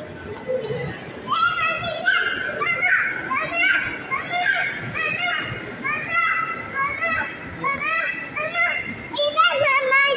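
Young children's high-pitched voices, a quick run of short chattering and squealing syllables that starts about a second in.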